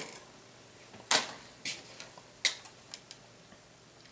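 A few sharp plastic clicks and taps as a grey styrene model-kit sprue is handled and laid down on a cutting mat, the loudest about a second in and another about two and a half seconds in, with fainter ticks between.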